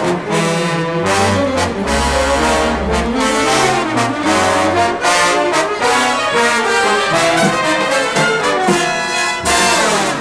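Jazz orchestra playing a dense passage with the brass section in front, trombones and trumpets together over low bass notes, ending in a loud ensemble accent near the end. Heard from a mono LP recording.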